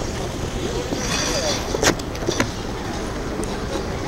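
Ice skate blades scraping on rink ice: a short scraping hiss about a second in, then two sharp clicks, over faint voices of skaters.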